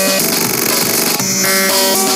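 Electronic music played back from an FL Studio project: held synthesizer notes that change pitch a few times.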